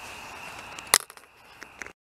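Steady night insect chorus with a high, even drone, broken about halfway by one sharp click or knock. A few faint clicks follow before the sound cuts off abruptly.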